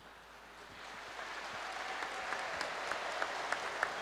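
Audience applause that starts softly and swells over the first couple of seconds, with a few sharp single claps standing out above it.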